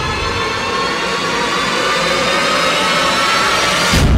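Dramatic TV-serial background score: a sustained suspense drone of held tones inside a rushing noise that swells steadily, building toward a low drum hit.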